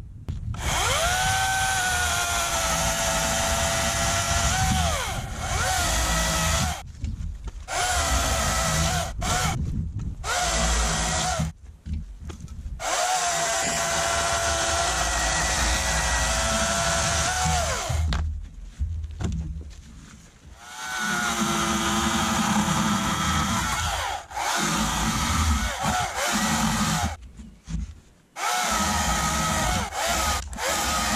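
Oregon CS300 battery-powered chainsaw cutting a log in several bursts, with short pauses between them. Its motor whine sags in pitch as the chain loads up in the wood and rises again as it frees.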